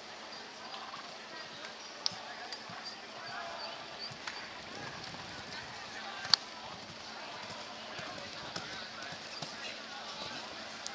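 Showground background of indistinct voices, with no words that can be made out. Two short sharp knocks stand out, one about two seconds in and a louder one a little after six seconds.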